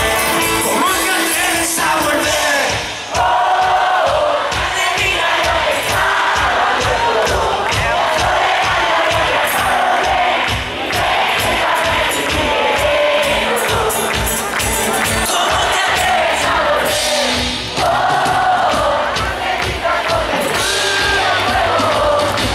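A live pop band plays a chorus with acoustic guitars and a steady drum beat while a large crowd sings along.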